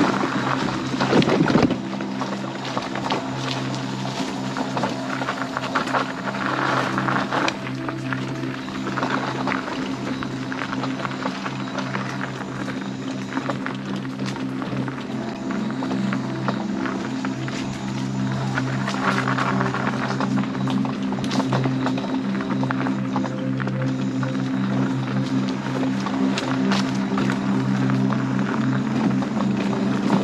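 Electric mobility scooter's motor humming steadily, holding a constant pitch, while it rolls along a bumpy dirt trail with scattered rattles and clicks and a louder knock about a second and a half in.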